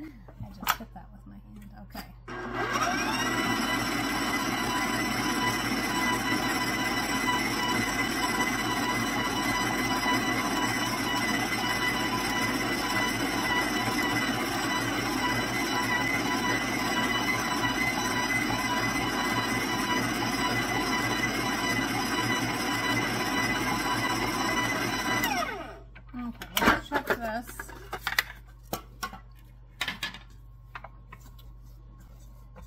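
KitchenAid stand mixer motor switched on, whining up to speed and running steadily as it works a thick cookie dough in the steel bowl. Near the end it is switched off and winds down, followed by a few short knocks.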